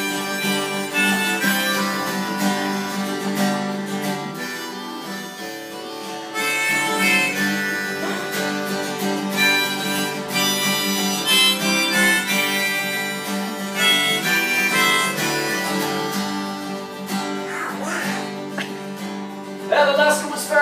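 Acoustic guitar strummed steadily while a harmonica plays a melody of held notes over it, with no singing.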